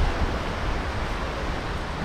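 Steady rushing of sea surf on the beach, mixed with wind rumbling on the microphone.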